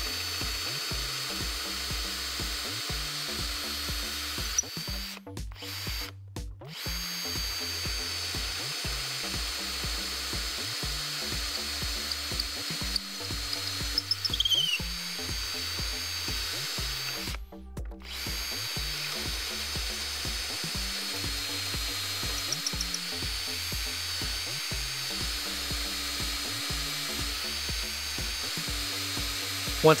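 Festool 18 V cordless drill running under load as its bit bores mortise holes into wood through a Rockler Beadlock jig, stopping briefly twice between holes.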